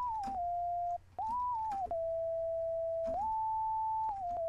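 Clean software synth lead with a near-pure, whistle-like tone, playing a few held notes that slide in pitch from one to the next, down and then up again, with a short break about a second in. It is undistorted, taken off the aux send that carries the distortion.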